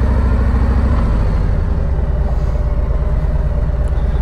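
Harley-Davidson Street Glide's V-twin engine running with a steady low exhaust pulse. Its sound changes about a second in as the bike moves off through the lot.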